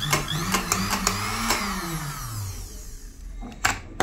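Sewing-machine motor run through its foot-pedal speed regulator: it spins up with a rising whine, then winds down and stops about two and a half seconds in. A couple of sharp clicks near the end.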